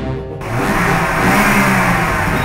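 Engine revving up in a loud noisy rush that starts about half a second in, over background music.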